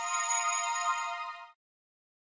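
The closing notes of a short electronic logo jingle: a held chord of several steady tones that fades and stops about one and a half seconds in.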